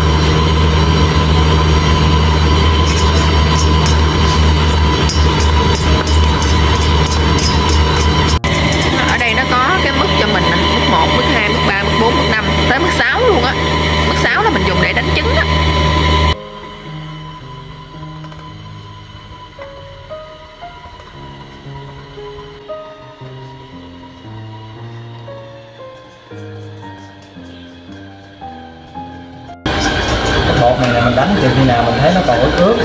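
Unie stand mixer's motor running steadily at low speed (setting 2) as its beater turns thick, sticky bánh dẻo dough. About sixteen seconds in, the mixer sound cuts off sharply and soft background music with a simple melody takes over.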